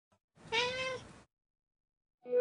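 A single recorded cat meow, under a second long, rising slightly and then falling in pitch, the sound of a production-company logo with a cat's face.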